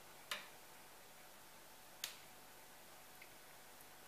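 Two short, sharp clicks about a second and a half apart, mouth sounds of someone eating a piece of bread, over near silence.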